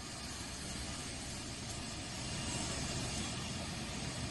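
Steady ambient noise at an airport apron: an even rumble and hiss of engines and machinery, with no distinct events.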